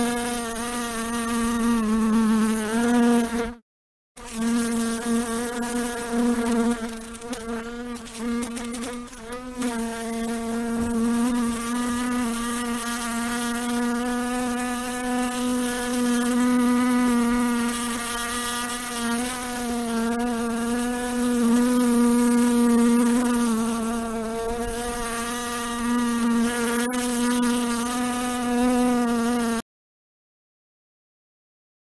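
Housefly buzzing in flight: a steady wingbeat hum with a slightly wavering pitch. It breaks off briefly about three and a half seconds in, then stops just before the end.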